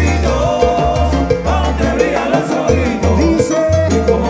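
Live salsa-timba band playing an instrumental stretch, with drum kit and congas over a strong, steady bass line.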